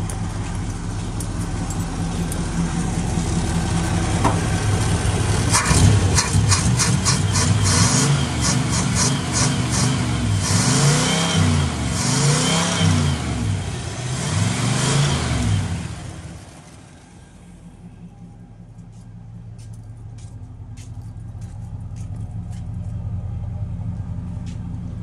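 A box Chevy's engine running steadily, then revved up and let back down three times in the middle. The engine sound then drops away sharply about two-thirds of the way through.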